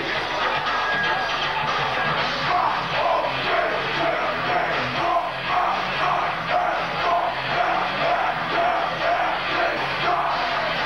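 Industrial metal band playing live, picked up by a camcorder microphone in the crowd: a dense, loud band mix with a steady beat.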